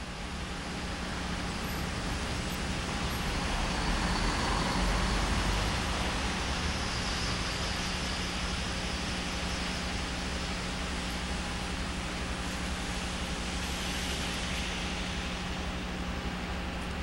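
City street traffic noise, a steady roar of passing cars and trucks with a low hum underneath. It fades in at the start and swells slightly a few seconds in.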